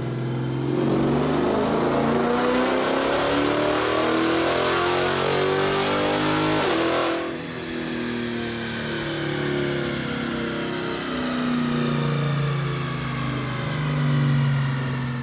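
Cammed 5.7 Hemi V8 with headers in a Dodge Charger R/T, making its final pull on a chassis dyno during tuning. The revs climb steadily for about six seconds, then the throttle closes suddenly and the engine winds slowly back down.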